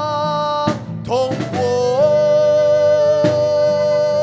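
A slow sung melody with instrumental accompaniment: long held notes that step up in pitch about a second in and again about two seconds in, over a steady repeating lower accompaniment.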